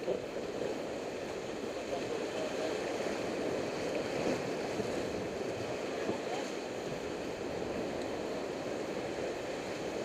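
Whitewater river rapids rushing and churning around an inflatable raft, a steady roar of water.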